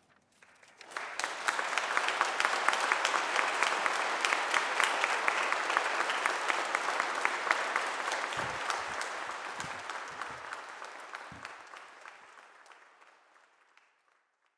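A large audience applauding. The clapping swells in about a second in, holds steady, then dies away over the last few seconds.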